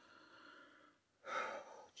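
A man sighing: one breathy exhale starting a little over a second in, after faint breathing.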